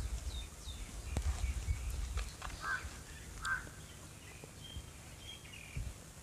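Small birds chirping now and then, with a couple of quick falling chirps near the start, two louder calls in the middle and a few short chirps near the end. Wind or handling rumble on the phone's microphone runs under the first half.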